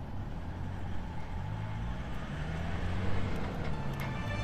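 An off-road vehicle's engine drawing closer, its low hum growing steadily louder over a wash of wind noise.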